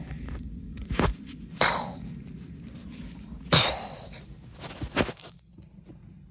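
Footsteps on grass and handling rumble from a hand-held recording phone, broken by a few sudden louder noises; the loudest comes about three and a half seconds in.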